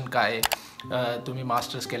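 A man speaking, with one sharp click about half a second in.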